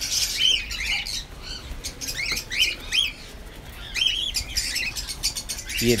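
Cockatiels in a colony aviary chirping: short rising-and-falling calls in clusters of two or three, at the start, around two to three seconds in and again around four seconds in, with brief flutters of wings.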